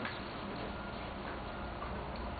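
Quiet room tone: a steady low hum with no distinct events.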